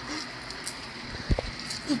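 A single dull, low thump about a second and a half in, over steady background hiss.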